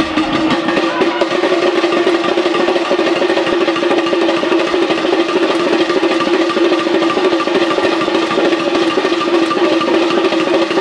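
Traditional drums playing a dense, continuous rhythm, with a steady held tone sounding above them.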